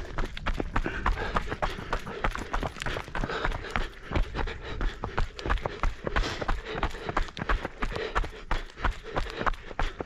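Runners' footfalls on a fell path, quick and irregular, several strikes a second, picked up close by the runner's camera.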